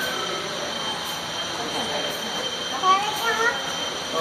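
Steady rushing background noise with a thin high steady tone, and a short voice-like call about three seconds in.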